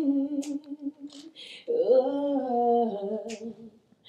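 A woman singing a love ballad solo, holding two long wordless hummed notes with vibrato, with short breaths between the phrases.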